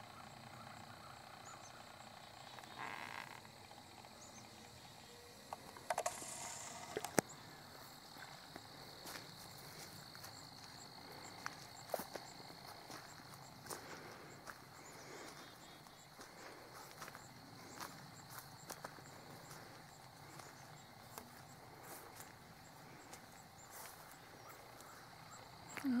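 Faint outdoor background with scattered soft clicks and knocks from the camera being handled and carried on foot through tall weeds, and a brief rustle about six seconds in. A faint steady high whine runs under most of it.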